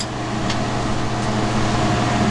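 Steady drone of studio machinery running: a constant low hum with a rush of air over it, level throughout.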